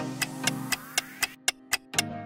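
Countdown-timer ticking, about four ticks a second, over light background music. The music drops out a little past halfway and the ticks carry on alone.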